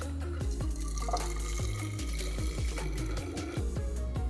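Cocktail mix poured from a steel shaker into the narrow steel canister of a Nitro Press: a slurping pour, over background music with a steady bass.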